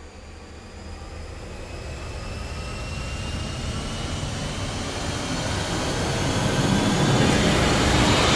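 A rising build-up sound effect, like a jet spooling up: a rushing noise with faint tones that slowly climb in pitch, growing steadily louder and brighter toward the end.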